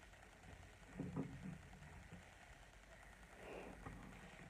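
Near silence with faint handling noise: a few soft knocks about a second in, from hands moving around resin ball-jointed dolls.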